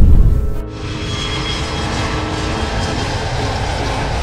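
A loud low rumble drops away about half a second in, giving way to the steady engine noise of a twin-engine jet airliner in flight, with music underneath.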